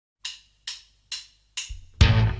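Four evenly spaced percussion clicks, about two a second, counting in a rock song, with a low bass note coming in just before the band starts.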